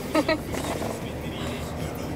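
A woman laughs briefly at the start, over the steady low hum of a car's engine and tyres heard from inside the cabin while driving.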